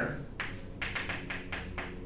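Chalk writing a short word on a blackboard: a quick, uneven run of sharp taps and scrapes, starting about half a second in and lasting about a second and a half.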